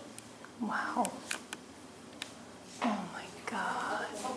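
Indistinct voices of people talking, with two short utterances that fall in pitch, about half a second and three seconds in, and a few light clicks.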